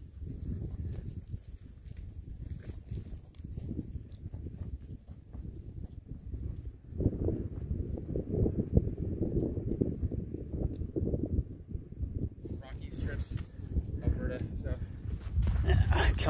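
Wind buffeting the microphone: a low, even rumble that grows stronger from about seven seconds in and eases off after about twelve seconds.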